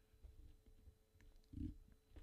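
Near silence: studio room tone with a faint low hum, and one brief, faint low sound about one and a half seconds in.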